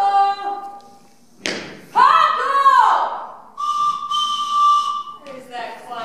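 Whistle-like pitched calls: short calls that glide up and down, then one long steady tone from about the middle, then another gliding call near the end.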